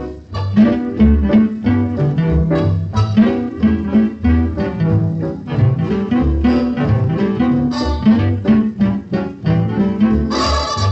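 1940s radio studio swing orchestra playing the opening of a big band swing tune, with a plucked double bass and rhythm guitar keeping a steady beat, heard from a restored electrical transcription disc.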